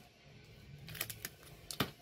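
Foil Pokémon booster pack wrappers being handled, giving a few faint crinkles and sharp crackles, the loudest about a second in and again near the end.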